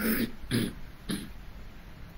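A man making three short non-speech sounds in his throat, about half a second apart, each briefer than the one before, as in a soft chuckle or a throat-clearing.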